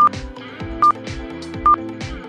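Quiz countdown timer beeping: three short high beeps a little under a second apart, over background music.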